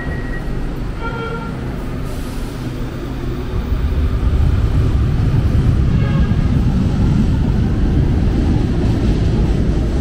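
Manila LRT Line 1 light-rail train pulling away from an elevated station platform: a low rumble of motors and wheels that swells about four seconds in and stays loud.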